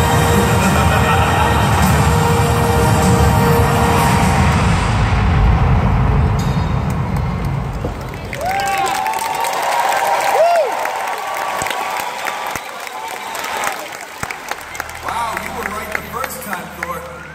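Loud arena show soundtrack over the PA with a heavy bass rumble, dying away about halfway through. After it, audience voices and high children's shouts and cheers are heard.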